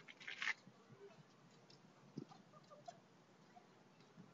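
Near silence, with a brief rustle just after the start and a few faint ticks after it.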